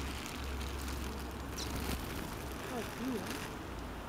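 Outdoor background of a steady low traffic rumble that fades about two seconds in, with faint voices of people. A single short high house sparrow chirp about a second and a half in.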